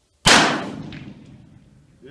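A single shot from a Freedom Arms single-action revolver in .454 Casull, fired with a hot full-power Casull load, about a quarter second in. The sharp report rings out and fades away over about a second and a half.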